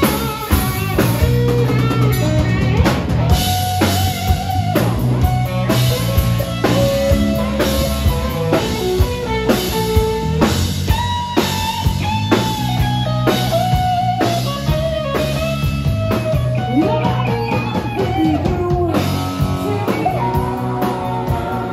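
Live rock band playing an instrumental break: a Telecaster-style electric guitar plays a lead line with sustained, bending notes over a steady drum kit beat and bass.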